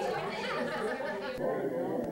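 Several people talking at once: overlapping chatter of a small crowd, with no single voice clear.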